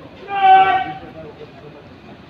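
A horn sounding once, a short steady blast of under a second.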